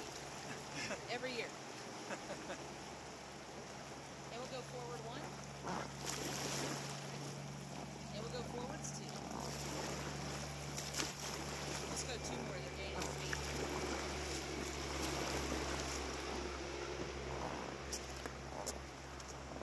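Steady wash of a calm river and breeze on the microphone around a drifting raft, with faint voices in the first few seconds and a few light knocks later on.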